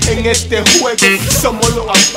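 Latin hip hop track: rapped vocals over a beat with deep bass and sharp drum hits.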